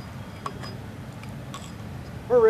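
Quiet outdoor background with a steady low rumble and a few faint clicks, the clearest about half a second in.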